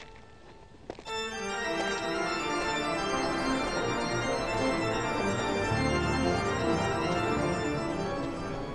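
Organ music playing sustained, changing chords, which swell in fully about a second in after a quieter opening with two short clicks.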